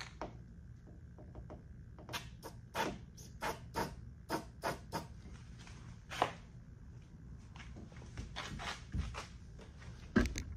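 A run of light clicks and taps from handling a spray-paint can and a rag, roughly three a second at first, with a single louder knock about six seconds in and a few more clicks near the end.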